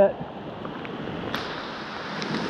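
Steady rush of heavy rain falling on a fast-flowing stream, with a single sharp tap about two-thirds of the way through.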